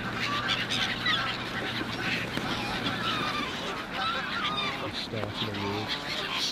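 Canada geese honking amid a flock of gulls calling, a dense chorus of many overlapping bird calls. A goose gives a deeper honk near the end.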